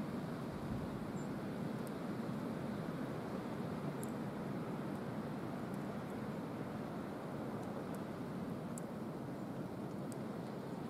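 Steady outdoor background noise, a low, even rumble and hiss like distant traffic, with a few faint, brief high ticks scattered through it.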